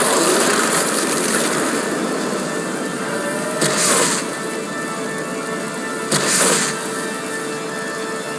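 Anime soundtrack: dramatic background music under a steady rush of energy sound effects, with two louder whooshing surges about three and a half and six seconds in.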